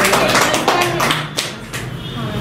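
A small group of people clapping, irregular hand claps that thin out and stop about a second and a half in, with voices underneath.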